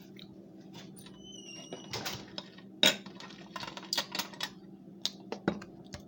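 Clicks, clatters and knocks of a dish and plastic containers being handled and set down on a glass tabletop, the sharpest knock about three seconds in, over a steady low hum.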